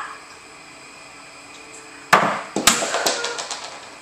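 Quiet room tone, then about two seconds in a sharp clatter of knocks, several more following over the next second and fading, some of them ringing briefly.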